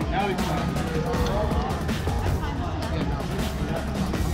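Background music with a steady low end, with indistinct voices over it.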